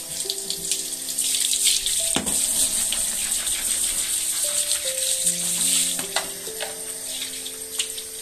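Water spraying from a handheld shower head onto a tiled shower floor and a wet puppy, loudest through the middle. Soft background music with long held notes plays underneath.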